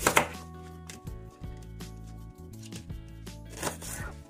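Background music, with a knife slicing through an onion onto a plastic cutting board: one cut just after the start and another near the end.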